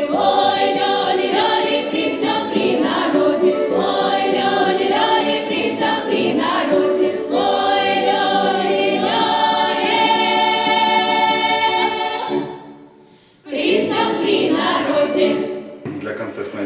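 A women's folk choir singing unaccompanied, several voices in harmony on long held chords. The singing fades out about twelve seconds in, and after a short gap voices start again near the end.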